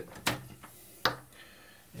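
Two sharp clicks about a second apart as a mains plug is handled and pulled from the wall socket, cutting power to the LED bulb.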